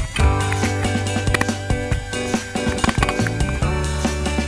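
Background music with a held bass line and a steady beat.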